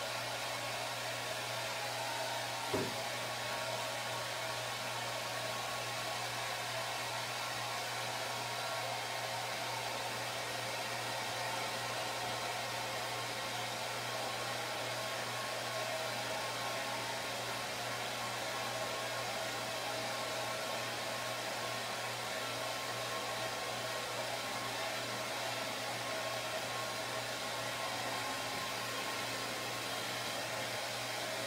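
Hair dryer running steadily, blowing on freshly painted paper to dry it. A single short knock about three seconds in.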